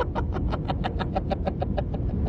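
A person laughing in a quick run of short pulses, about nine a second, stopping near the end, over the low steady running of a car engine heard from inside the cabin.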